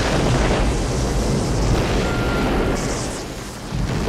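Film sound effect of a starship's hull being blasted by weapons fire: a long, loud, rumbling explosion, with a fresh surge of blast near the end.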